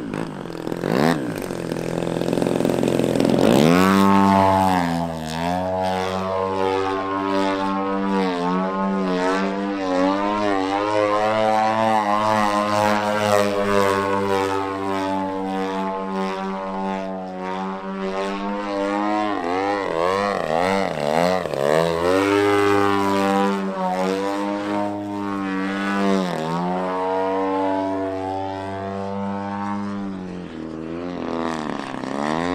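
The engine and propeller of a Pilot RC Laser radio-controlled aerobatic plane in flight. The drone is steady and strong, and its pitch swoops up and down again and again as the plane manoeuvres and passes. It gets louder about three and a half seconds in.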